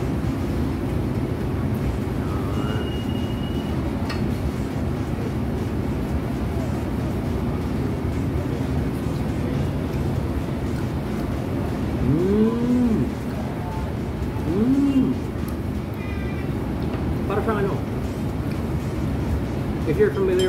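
A man chewing food lets out two short 'mmm' hums of enjoyment, each rising and falling in pitch, a little past the middle, over a steady low background rumble of the room.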